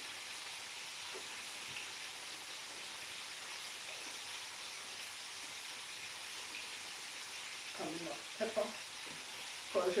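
Fish frying in hot oil in a pan: a steady sizzle.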